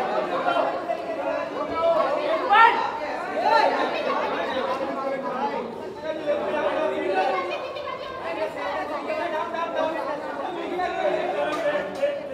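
Hubbub of many people talking at once in a large hall, their voices overlapping, with a couple of louder calls rising in pitch about three seconds in.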